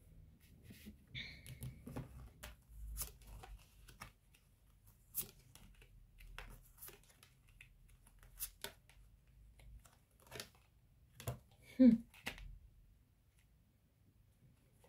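Tarot cards being set down and slid into place on a table: a scattered series of light taps and brushing sounds. A brief vocal sound comes near the end.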